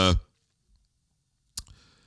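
The last syllable of a man's speech, then near silence broken by a single sharp click about one and a half seconds in.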